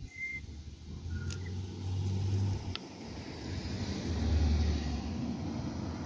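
Low engine rumble of a motor vehicle on the street, swelling twice over steady outdoor hiss.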